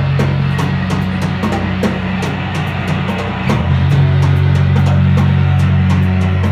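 Live rock band playing loud: distorted electric guitar and bass on a held low chord, with drum-kit and cymbal hits all through. The low chord changes about three and a half seconds in.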